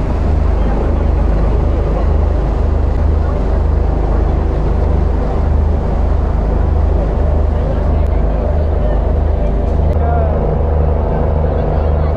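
Steady low engine drone of a river cruise boat under way, with a slow, regular throb.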